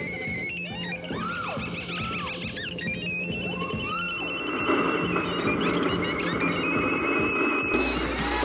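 Experimental electronic music: arching pitch glides and stepped, beeping tones over a low hum, with a rough noisy wash building in the second half and an abrupt change near the end.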